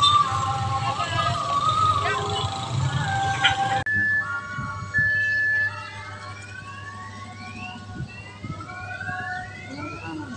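Railway level crossing warning alarm sounding from a loudspeaker, an electronic siren-like melody of wavering tones, cut off abruptly about four seconds in. It is followed by fainter short high beeps and repeated rising whistle-like tones.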